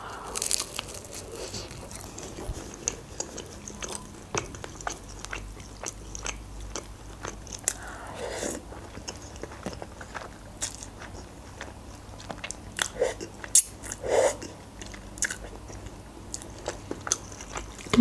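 Close-miked eating: biting and chewing a shawarma wrap, with many small wet mouth clicks and crunches, and a slurp of instant noodles about halfway through.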